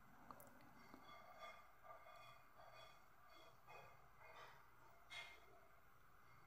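Near silence: faint room tone with a few soft, quiet noises recurring about once a second.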